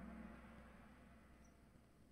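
Near silence, apart from a low electronic tone from the Kahoot quiz game that fades out within the first second as the answer is revealed.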